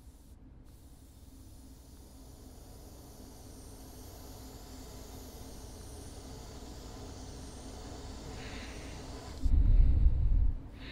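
Gravity-feed airbrush spraying thinned paint at low air pressure: a steady hiss that slowly grows louder. Near the end a much louder, muffled low rush lasts about a second.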